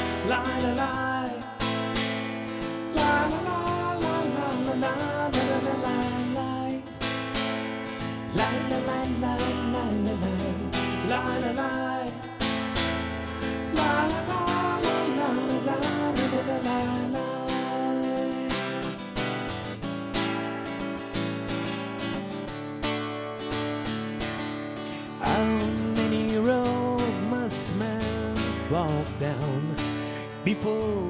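Steel-string acoustic guitar strummed steadily in chords, with a man's voice singing in stretches without clear words over it.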